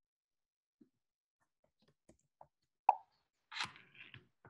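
Near-silent video-call audio during a pause, with a few faint ticks and one sharp click about three seconds in, then a brief noise just before the end.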